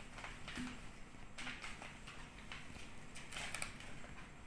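Soft rustles and short clicks of paper and plastic craft tools being handled at a table, with a cluster of sharper ticks about three and a half seconds in.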